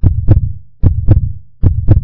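A heartbeat sound effect: three loud, deep double beats, lub-dub, about one every 0.8 seconds.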